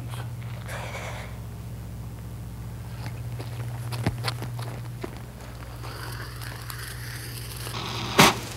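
Ground fountain firework being lit: a few small crackles and pops, then a hiss that builds over the last couple of seconds as it starts spraying sparks. A steady low hum runs underneath.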